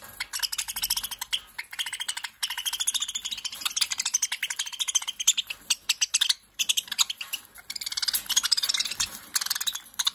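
A cage of budgerigars chattering and warbling in quick, busy chirps as they crowd a seed dish, with a short lull a little after halfway.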